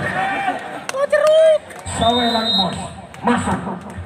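Men's voices calling and shouting over crowd chatter, the loudest call about a second in, with a few sharp clicks around it.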